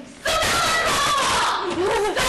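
A man's loud, drawn-out shout that starts after a brief pause, its pitch wavering and swooping near the end.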